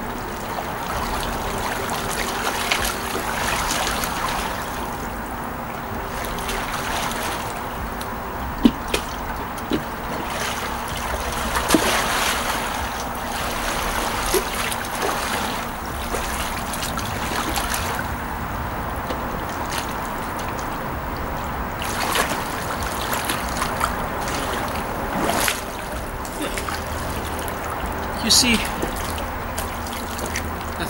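Water splashing and sloshing from a swimmer doing breaststroke in a pool, with several sharper splashes scattered through.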